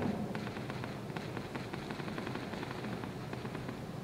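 Faint, irregular clicks, knocks and shuffling of people moving about in a church, several small sounds a second with no steady tone.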